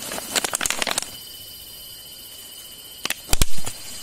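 Clear plastic jar crackling and clicking as it is handled and tipped to let the snake out, with a heavy thump about three and a half seconds in. A steady high insect chirr runs underneath.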